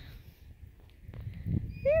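A faint low rumble with a few light ticks, then a woman's high-pitched voice starts near the end.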